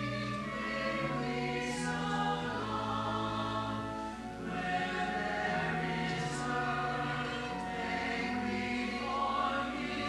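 Church choir singing, with long held notes that change every second or two.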